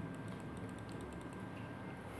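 Faint, irregular clicking of computer keys over a low steady hum.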